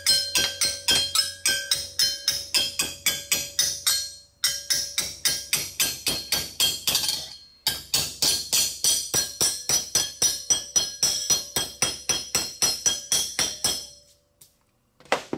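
Hammer blows on a metal plate clamped in a vise, bending it over: quick strikes about five a second, each with a metallic ring. Two short pauses come about four and seven and a half seconds in, and the hammering stops just before the end.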